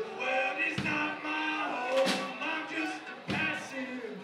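Live gospel-style sing-along: many voices of band and crowd holding long notes together over a slow beat, a low drum thump about every two and a half seconds with a sharp hit halfway between.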